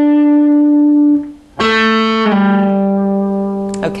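Electric guitar playing single sustained lead notes from the A minor scale, joined by slides. A held note stops about a second in. A new note is picked just after and slides down a step to a lower note, which rings until near the end.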